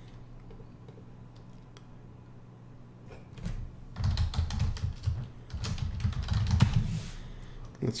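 Computer keyboard typing: a quick run of keystrokes that starts about three and a half seconds in, after a few quiet seconds, and goes on until nearly the end.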